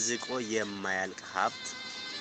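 A voice reading aloud in Amharic over soft background music with steady held tones; the voice stops about a second and a half in, leaving the music alone.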